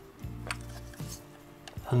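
Cuckoo clock's high-note bellows worked by hand: its top is lifted and let down, giving a few light clicks but no whistle note. The bellows is not sounding, and the repairer thinks it might need more weight on its top.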